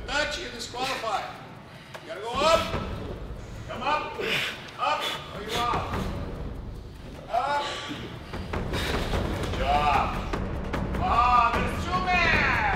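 Men's voices shouting and groaning in short rising-and-falling calls, with a few thumps on the mat.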